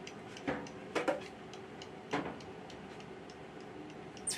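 Newborn Asian small-clawed otter pup suckling on a feeding-bottle teat: a few short wet clicks and smacks, the loudest about half a second and one second in and again past two seconds, with fainter ticks between.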